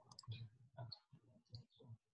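Near silence with faint, irregular clicks, several a second.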